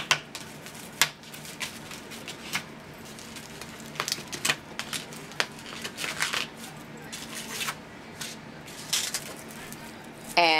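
A paper template being worked off a floral foam round, with a scatter of short paper rustles and crinkles and small clicks as it is unpinned and handled.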